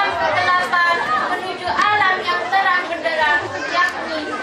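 A girl's voice speaking, overlapped by the chatter of other voices.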